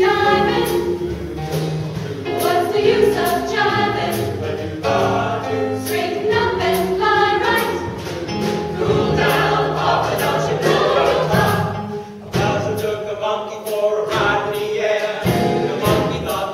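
A mixed vocal ensemble of about a dozen men and women singing a cappella in close harmony, low voices holding a bass line under the upper parts.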